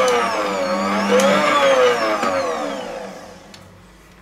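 Bosch stand mixer's motor turning its dough hook through thin pizza-dough batter. About two seconds in it winds down, its whine falling in pitch and fading out as it is switched off.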